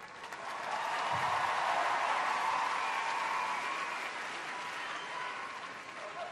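Studio audience applauding, swelling about a second in and slowly fading toward the end.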